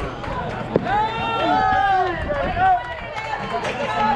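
A baseball bat strikes the ball once, a short sharp hit about a second in, followed by several voices shouting and cheering as the batter runs.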